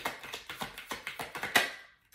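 A deck of tarot cards being shuffled by hand: a quick run of light clicks and flicks, with one louder snap about one and a half seconds in. The shuffling stops just before the end.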